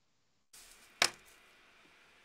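A single sharp click about a second in, over faint hiss on a video-call line, which cuts in after half a second of dead silence.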